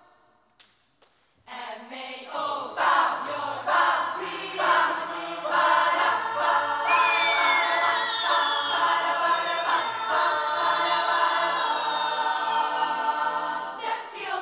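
Youth choir singing a cappella. After a brief near-silent pause broken by two sharp clicks, the choir comes back in with short rhythmic chords, then holds full chords while high tones slide down in pitch over them.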